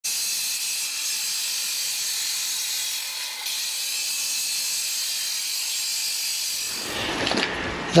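Disc cutter's diamond blade cutting through a concrete block, a steady hiss that stops about six and a half seconds in. A man starts speaking near the end.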